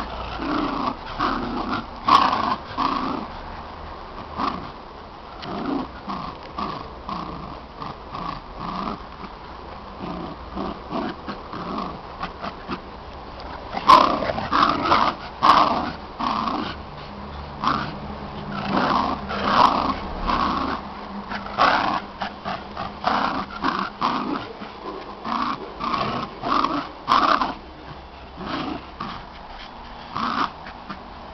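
Dogs growling in play while tugging against each other on a rope toy, in many short bursts that come thicker and louder about halfway through.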